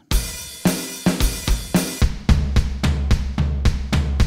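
Rock Drum Machine 2 iPad app playing a grunge rock drum pattern at 110 BPM: kick, snare, hi-hat and cymbal hits in a steady beat. It opens on a ringing hit, and the low end grows heavier about halfway through.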